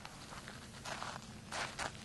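A few short crunching scuffs on gravelly sand, about a second in and twice near the end, from a person shifting or stepping on the ground.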